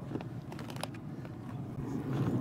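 A few faint light clicks and taps of a metal rack and foil pan being handled at an open pellet grill, mostly in the first second, over a low steady rumble.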